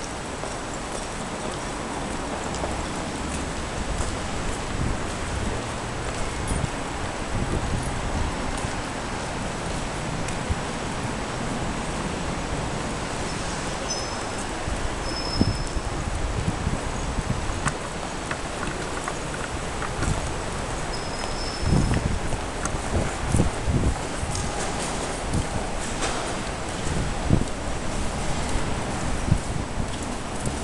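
Footsteps on hard stone paving, irregular knocks that come more often and louder in the second half, over a steady background hiss.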